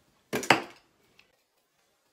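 Small handheld party noisemaker being shaken: two quick noisy bursts close together, the second louder, followed by a faint click.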